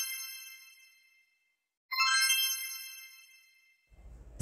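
A bright, bell-like chime rings out and fades away. It sounds again about two seconds in and fades out once more.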